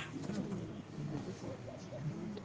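A bird calling faintly in low, wavering notes.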